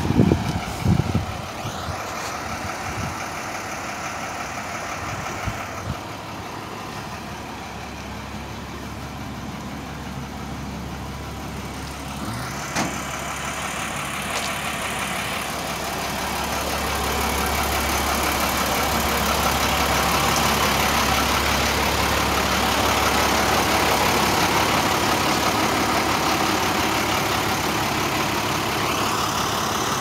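Diesel engine of an International 4700 flatbed tow truck idling steadily, growing louder in the second half. A couple of short knocks sound in the first second.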